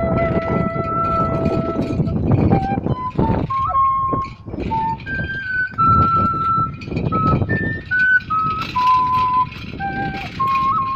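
A cane flute playing a solo melody: one long held note, then from about two seconds in a run of short notes stepping up and down. A steady rumbling noise runs underneath.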